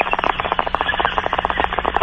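Water bong being hit: rapid bubbling and gurgling as smoke is drawn through the water.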